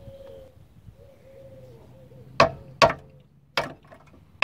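Three sharp metal knocks, two close together just past halfway and a third almost a second later: a hammer struck against the bared pistons of a Renault Clio engine block stripped for inspection.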